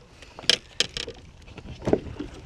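A few sharp clicks and knocks of handling gear on a boat deck: a landing net and fishing tackle being moved about, with a louder knock near the end.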